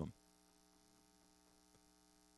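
Near silence, with only a faint, steady electrical hum.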